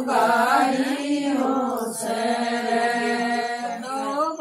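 Women's voices singing a Haryanvi folk song without accompaniment. The melody moves at first, then settles into one long held note for most of the rest.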